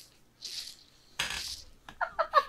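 Breathy puffs of held-in laughter from a woman, two short bursts of breath about three-quarters of a second apart, the second louder and longer.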